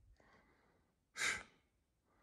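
A person sighing, one short breathy exhale about a second in.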